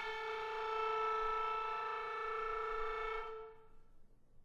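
Clarinet playing one long held note that starts suddenly and fades away about three and a half seconds in.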